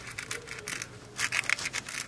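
Aluminium foil on a baking sheet crinkling and rustling in a string of short scratchy crackles as hands press a plastic cookie cutter into soft dough.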